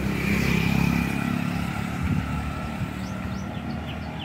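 Motorcycle engine running as it passes along the road, its hum slowly fading, with a few bird chirps near the end.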